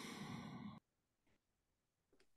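A person's long breathy sigh trailing off, cut off suddenly under a second in, then near silence.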